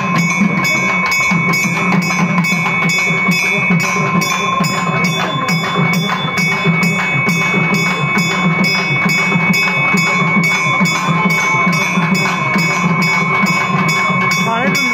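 Temple festival music of drums and ringing bells, keeping a steady quick beat of about three strokes a second under a sustained metallic ring.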